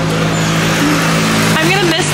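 A motor vehicle's engine humming steadily, heard from inside the cabin, with voices starting near the end.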